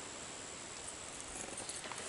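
Quiet outdoor background: a steady hiss with a thin, high, unbroken tone, and a few faint knocks and rustles near the end.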